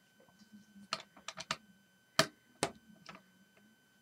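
A run of light, sharp clicks and taps from handling something. Four or five come in quick succession about a second in, then a few single ones, the loudest just after the two-second mark.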